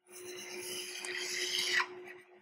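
A stylus scratches across a tablet's writing surface in one long continuous stroke, drawing a straight line. It grows slightly louder and stops abruptly near the end.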